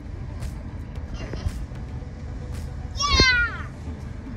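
Steady low rumble of a car cabin. About three seconds in comes a young child's short, high-pitched squeal that falls in pitch.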